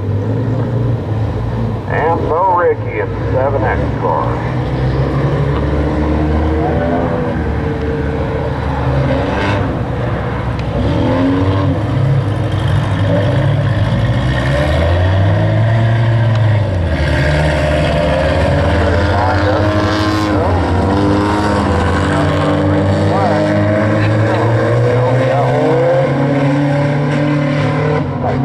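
A pack of Hornet-class four-cylinder stock cars racing on a dirt oval, several engines overlapping and rising and falling in pitch as the cars lift and accelerate through the turns.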